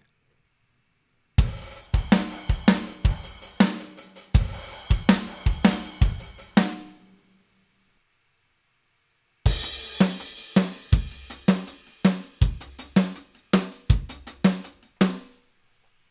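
EZdrummer 3 sampled drum kits auditioned in turn: a steady groove of kick, snare, hi-hat and cymbals plays for about five seconds and stops. After a pause of about two seconds, a second kit plays a similar groove.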